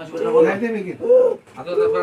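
A person's voice making three drawn-out wordless sounds in a row, each rising and then falling in pitch.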